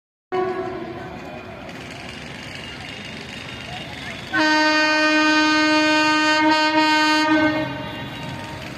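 Locomotive horn of an approaching train: a short fading blast at the start, then one long steady blast beginning about four seconds in and lasting some three seconds, over a low rumble.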